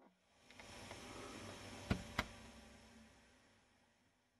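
Faint steady hiss that swells in over the first second and slowly fades, with two sharp clicks about a quarter second apart near the middle.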